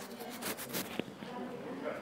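Handling noise from a clip-on lavalier microphone with a foam windscreen held in the fingers: a quick run of rustles and scrapes in the first second, ending in a sharp click, over faint voices.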